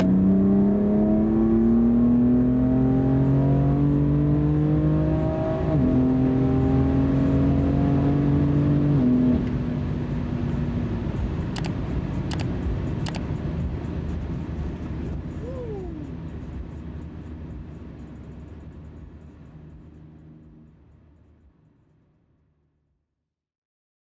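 2018 BMW F80 M3's twin-turbo inline-six, stage 2 tuned, heard from inside the cabin accelerating with rising pitch, with a dual-clutch upshift about six seconds in before it pulls on steadily. The engine sound drops away around nine seconds and everything fades out gradually, with three short clicks near the middle.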